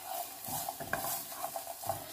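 Garlic cloves frying gently in a little olive oil over low heat, giving a soft sizzle. A spatula stirs them, scraping and tapping across the pan a few times.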